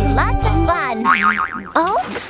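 Cartoon background music with a pulsing bass line that stops under a second in. It gives way to springy, boing-like sound effects whose pitch wobbles and slides up and down.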